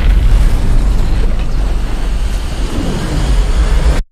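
Film soundtrack: a loud, dense rumbling roar of a vast horde of monsters stampeding. It cuts off suddenly at the end.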